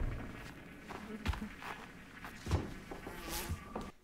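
Bees buzzing, a steady low hum from the film's soundtrack, with a few soft, brief knocks in it.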